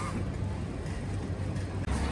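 Steady low rumble of street traffic, with a brief sharp sound right at the start.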